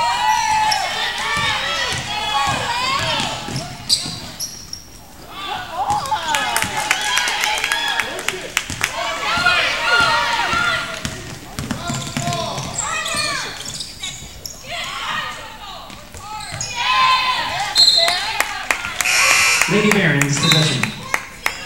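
Basketball game sounds on a hardwood gym floor: a ball dribbling and many short high sneaker squeaks as players run, with shouts from players and spectators. A short high whistle blast sounds near the end, followed by a louder burst of noise.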